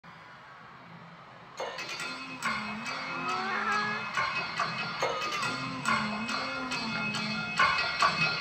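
Song intro played loud over an arena sound system, recorded from the crowd. It cuts in suddenly about a second and a half in, with a heavy beat hitting about every 0.8 seconds over a bass line, and follows a low murmur of the hall.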